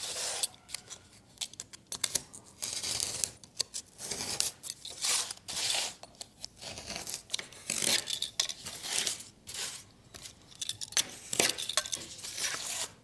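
A knife blade cutting and scoring brown cardboard in a run of short, irregular scraping strokes, mixed with cardboard pieces being slid and handled on a tabletop.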